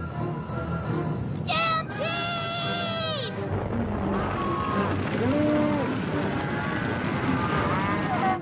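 Cartoon cattle stampede: several long, pitched cow moos over a rumble of galloping hooves that builds about halfway through, with background music.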